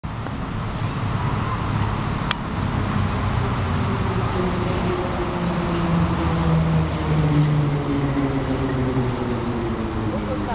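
A motor vehicle engine running steadily, a low drone that shifts slightly in pitch, with one sharp click a little over two seconds in.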